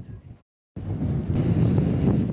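A brief cut to silence, then the low rumble of a pickup truck driving on a snowy road, with a steady high whine joining about halfway through.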